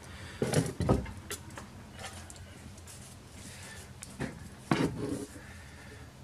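Handling knocks on a wooden workbench: a couple of clunks about half a second to a second in as an electric motor on its sheet-metal mount is moved and set down, then another cluster of knocks and rubs around four to five seconds in.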